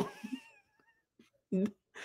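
A person laughing, loud at first and cut short, followed by a faint, high, wavering tone lasting about half a second. A short low voice sound comes about a second and a half in.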